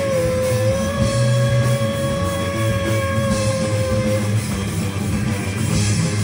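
Live rock band playing without vocals: electric guitars and bass guitar, with a long held high note that bends slightly at the start and stops about four seconds in.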